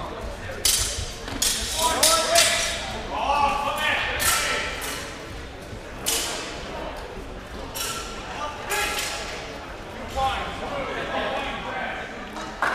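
Steel longswords clashing several times, in the first few seconds, with short metallic rings that echo in a large hall, amid shouted voices.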